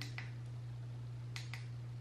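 Two light clicks about a second apart from handling a battery-powered heated eyelash curler while its heat setting is chosen, over a steady low electrical hum.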